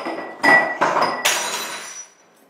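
A few sharp knocks, then a crash of glass or china shattering about a second and a quarter in, with ringing shards: a valuable object breaking on the floor.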